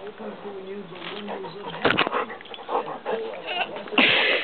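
A pet animal vocalising with drawn-out, moaning calls, then shorter calls, and one sharp knock about two seconds in.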